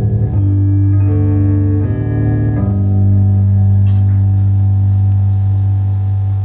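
Slow live guitar music: low sustained chords changing about every second, then one low chord held and left ringing through the second half.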